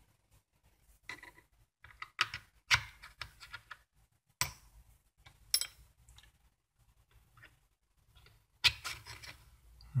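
Brass tubes tapping and scraping against metal: a tin of flux paste and a small tin-plate boiler dome cut from a spray-paint can, as the tube ends are dipped in flux and pushed into their holes. A handful of sharp clicks are spread through it, with soft rubbing between.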